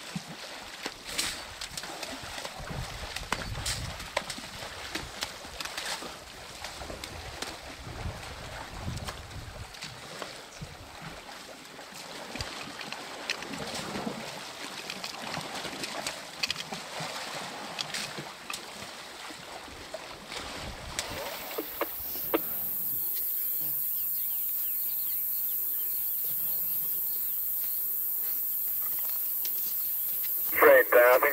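Muddy water splashing and sloshing in irregular bursts as a baby elephant rolls in a waterhole among adult elephants' legs. About two-thirds of the way in, this gives way to a steady high hiss.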